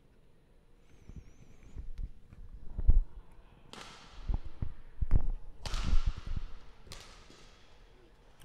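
A badminton rally: a racket strikes the shuttlecock with a sharp crack three times, one to two seconds apart, while players' feet thud on the court between the strokes.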